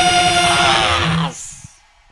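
Power metal band holding its final chord with drums underneath, the closing note of the song. The chord breaks off about a second and a quarter in and dies away to a faint tail.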